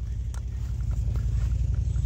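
Footsteps of someone walking on dirt, a few faint ticks, over a steady low rumble.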